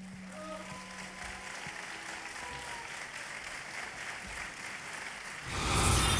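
Audience applause after a live folk song ends, with the bagpipe's low drone dying away about two seconds in. About half a second before the end, a louder whooshing sound effect cuts in.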